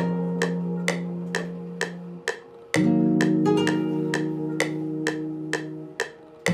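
Software nylon-string guitar (the Omnisphere Nylon Sky patch) playing a looping melody of plucked notes, about two a second, over held chords. The first chord cuts off a little past two seconds and a new chord comes in just before three seconds.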